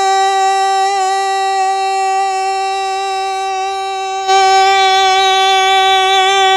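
A man holding one long sung note at a steady, fairly high pitch without a break, getting louder about four seconds in.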